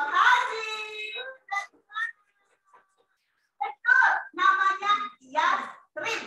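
A woman singing unaccompanied in short, lively phrases, with some notes held, and a pause of about a second and a half in the middle.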